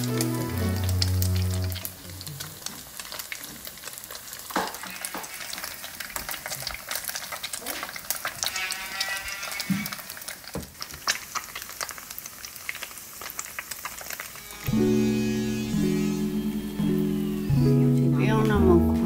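Pieces of bean curd skin frying in shallow oil in a pan: a dense crackling sizzle with a few sharper pops. Background music plays over the first two seconds and comes back about three seconds before the end.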